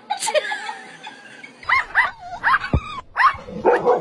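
Dog yipping: a quick run of short, high yelps, several a second, starting about a second and a half in, with a dull thump among them.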